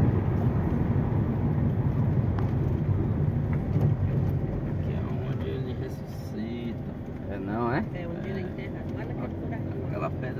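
Car engine pulling uphill with tyre rumble on a paving-block road, heard from inside the cabin. The low drone eases off about halfway through as the car levels out and turns at the top. Faint voices come in during the second half.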